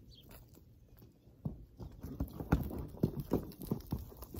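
Horse's hooves stamping and thudding on straw-covered dirt in a quick, irregular run that starts about a second and a half in, as a hose-shy horse moves away from the spray.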